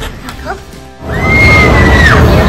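Quiet background music, then about a second in a sudden jump to loud amusement-arcade noise: a dense din of game machines with one long, high, steady electronic tone that bends downward at the end.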